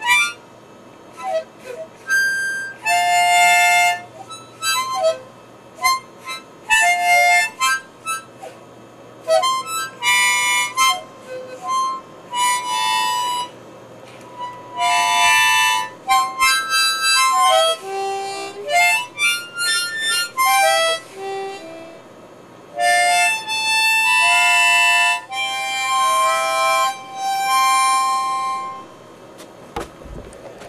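A young child playing a small harmonica, sounding several reeds at once in irregular puffs and longer held blasts with short pauses between.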